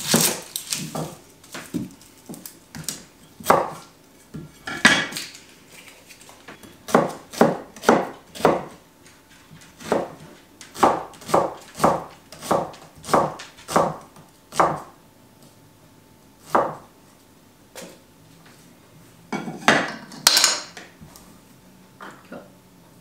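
A cleaver chopping an onion on a wooden chopping block: a series of sharp knocks, scattered at first, then a quicker run of about two or three chops a second through the middle. A longer, rougher noise comes near the end.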